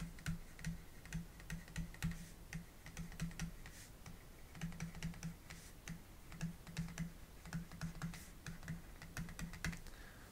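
Stylus tapping and scratching on a pen tablet as words are handwritten: faint, quick, irregular clicks, with a low hum that comes and goes.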